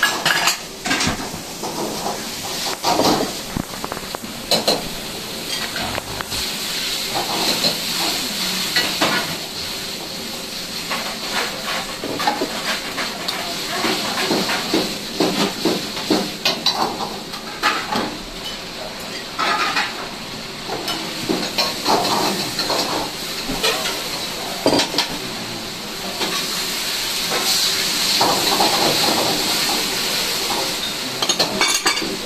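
Ramen kitchen at work: metal pots, utensils and ceramic bowls clattering and knocking, over a steady sizzle of food frying in a wok that grows louder near the end.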